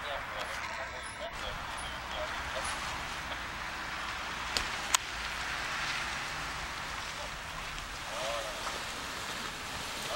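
A steady rushing background noise with faint, distant voices, and two sharp clicks close together about halfway through.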